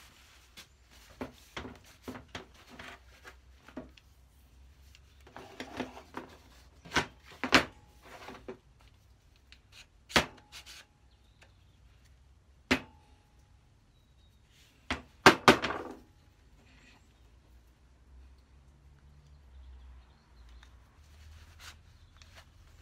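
Metal parts of a combination plough plane knocking and clinking against each other and scraping as a stiff part is worked along its steel rods: a handful of sharp knocks with quieter scrapes between them. Two of the knocks, about ten and thirteen seconds in, ring briefly. The part sticks on the rods and does not slide freely.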